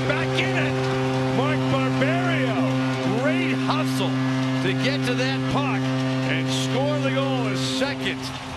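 Arena goal horn sounding one long, steady low tone over a cheering crowd after a home goal, cutting off near the end.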